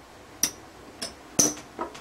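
Casino chips clicking together as a hand picks them off the stacks: four sharp clicks with a brief ring, about half a second apart, the third the loudest.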